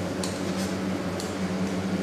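Steady low hum of production-room machinery, with a couple of light clicks, about a quarter second in and again a little past one second, from a knife working along a metal ruler on a stainless-steel table as a slab of tofu is cut.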